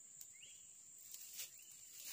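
Near silence: faint outdoor ambience with a steady high-pitched insect drone, a short faint chirp about half a second in, and a few soft clicks.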